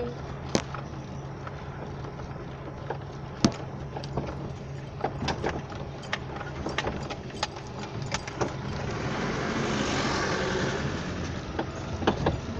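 Steady low engine hum and scattered rattles and knocks heard from inside a moving vehicle. Near the end a rush of noise swells up and fades away, as another vehicle, a big truck, goes by.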